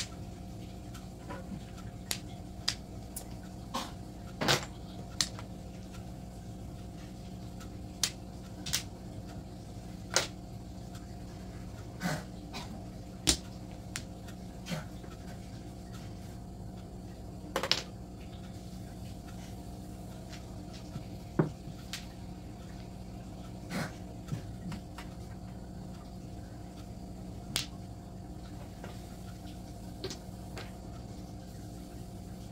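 Mahjong tiles clicking as players draw, set down and discard them on the table: scattered sharp clicks every second or two, more frequent in the first half, over a steady low hum.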